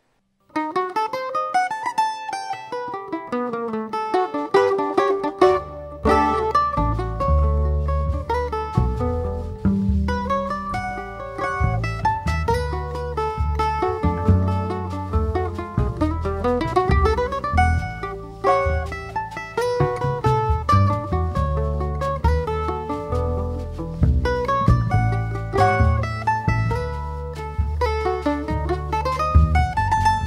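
Instrumental choro on a Brazilian bandolim, a steel-strung mandolin, playing a plucked melody alone at first. An upright double bass and a drum kit join in about five seconds in.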